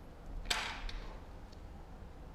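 A single sharp tap or click about half a second in, fading quickly, followed by two faint ticks, over a low steady hum.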